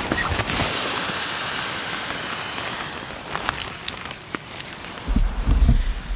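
Handling of camping gear with fabric rustling: a steady hiss for about three seconds, then scattered clicks, and a low rumble on the microphone in the last second.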